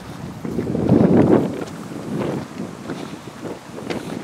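Wind buffeting the microphone in uneven gusts, loudest about a second in.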